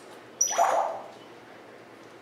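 African grey parrot giving one short, loud squawk of about half a second, a little under half a second in, with a falling pitch.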